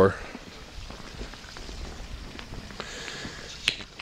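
Quiet outdoor background with light footsteps on a concrete driveway, and a sharper click near the end.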